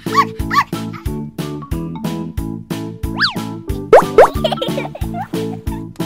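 Upbeat children's background music with a steady beat, with cartoon-style sound effects laid over it: a few short chirps near the start and swooping pitch glides around the middle.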